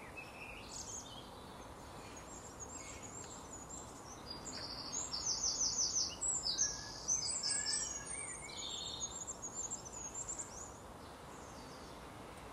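Small birds singing, with clusters of quick, high, repeated chirps strongest through the middle seconds, over a steady faint background noise.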